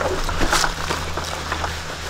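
Low, steady wind rumble on the microphone, with one short sharp noise about half a second in.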